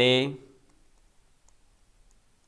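A man's voice trails off in the first half-second. Then it is near quiet, with a few faint, scattered clicks as words are handwritten on a digital whiteboard.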